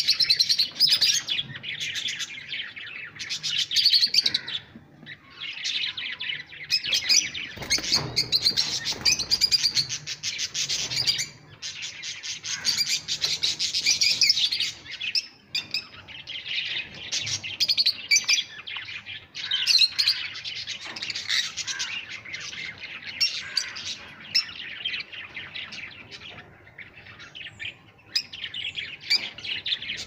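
Several caged rosy-faced lovebirds chirping and chattering: rapid, overlapping high-pitched chirps that run almost without a break.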